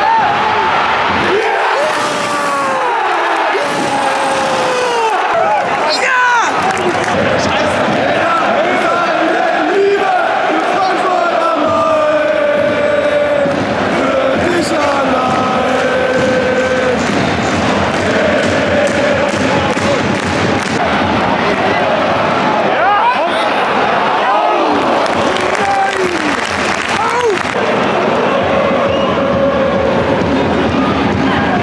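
Football stadium crowd, thousands of fans singing and chanting with cheering and shouting.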